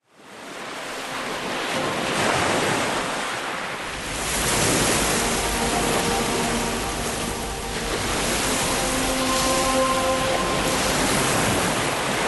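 Ocean surf fading in from silence, a steady wash of breaking waves that swells about four seconds in. Soft held music notes come in under it from about halfway.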